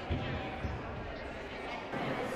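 Murmur of a seated crowd chatting, with two dull low thumps about half a second apart near the start.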